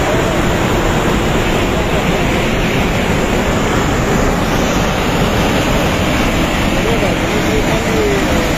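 Muddy flash-flood river in spate, the torrent rushing with a loud, steady noise of water.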